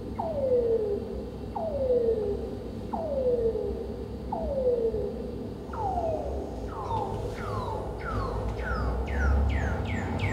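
A repeating sliding tone, each note gliding steeply downward in about half a second, roughly one every second and a quarter. About six seconds in the glides come faster and start higher in pitch, crowding together near the end. A low steady rumble lies underneath.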